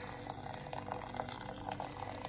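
Water poured in a steady stream from a kettle into a glass bowl of dry couscous, splashing and foaming as it fills the bowl.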